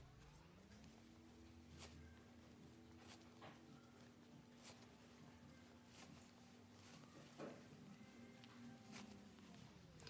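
Near silence: a faint steady hum, with faint scattered rustles and clicks of cotton fabric being scrunched by hand over a safety pin to feed elastic through a waistband casing.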